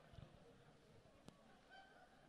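Near silence: faint room tone in a hall, with a faint click a little past halfway.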